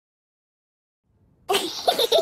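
Silence, then about one and a half seconds in a sudden voice-like cartoon sound effect starts, part of a logo intro sting.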